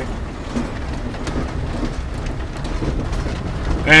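Steady low engine and road rumble heard from inside a vehicle's cab while driving over a snow-covered ramp, with a few faint rattles.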